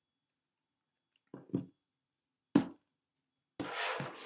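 A deck of tarot cards being cut into piles and set down on a desk: two soft taps about a second and a half in, a sharper, louder tap a second later, then more card handling near the end.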